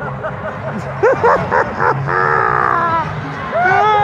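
Wordless voice calls: a quick run of short, barking yelps about a second in, then a held call, and a long falling call near the end, over steady crowd noise.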